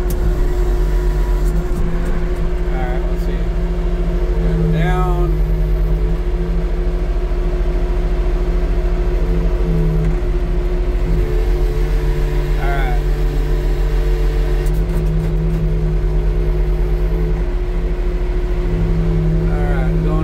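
The engine of an old military extendable-boom forklift running steadily at idle, heard from inside its cab.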